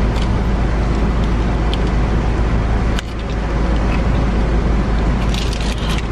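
Steady noise inside an idling car: a deep engine rumble under an even hiss, with a single sharp click about halfway through.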